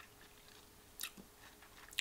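Quiet room tone broken by two short, soft mouth clicks, one about halfway through and one at the end: lip and tongue smacks of someone tasting whisky in his mouth.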